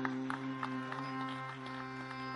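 Tanpura drone: a steady hum on the tonic with its strings plucked one after another, each pluck ringing briefly over the drone.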